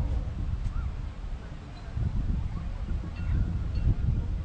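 Wind rumbling and buffeting on the microphone, with a few faint, short chirps that rise and fall in pitch.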